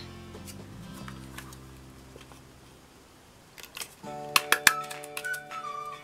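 Soft background music of held notes, with a few sharp clicks about four seconds in from a small stapler driving staples through coloured card.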